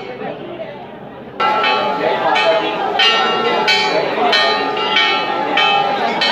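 Metal temple bells struck over and over, starting about a second and a half in, roughly three strikes every two seconds, each ringing on over the one before, above the murmur of a dense crowd.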